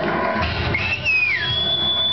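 A person whistling over background music: one whistle rises and then falls about a second in, followed by a long, steady high whistle.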